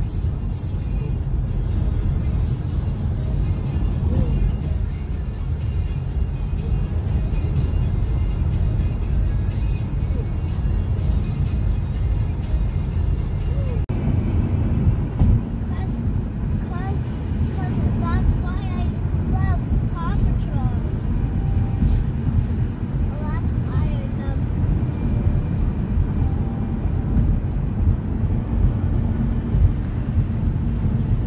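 Steady low rumble of a car driving, heard from inside the cabin, with music playing along over it. Between about a third and two thirds of the way in, short pitched rising-and-falling notes sound above the rumble.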